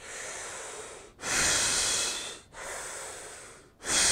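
A man breathing deeply and slowly in diaphragmatic (belly) breathing, with the chest held still. There are two breath cycles, each made of a quieter stretch of breath noise followed by a louder one, about a second apiece.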